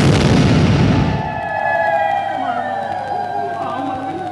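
Live stage sound from a folk theatre performance: a loud rumbling crash that dies away over the first second, followed by a single held musical note with a faint voice wavering underneath.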